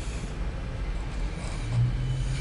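Low steady rumble of a loaded CSX autorack freight train rolling past, heard from inside a parked vehicle. A low steady hum joins it near the end.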